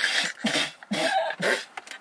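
A woman laughing in a quick run of about five breathy bursts.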